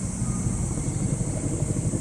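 Wind buffeting the microphone: an uneven low rumble that grows stronger, over a steady high-pitched hiss.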